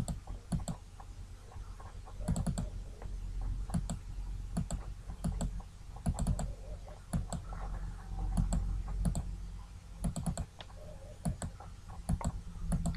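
Computer mouse clicking at irregular intervals, often in quick pairs, as polygon vertices are placed, over a low steady hum.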